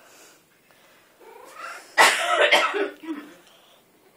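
Tuxedo cat chirping, with a short rising call about a second in. About two seconds in comes a loud, harsh cough that lasts about a second, with a short lower chirp just after it.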